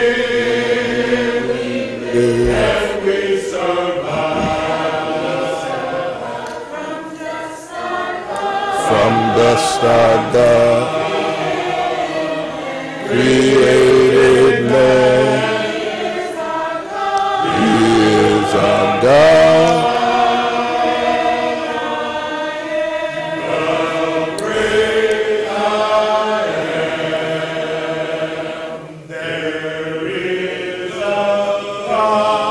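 A congregation singing a hymn together in unaccompanied a cappella harmony, with many voices swelling and easing between phrases.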